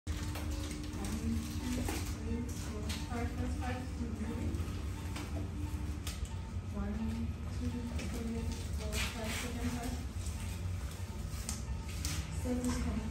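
Indistinct voices talking over a steady low hum, with a few light clicks and knocks.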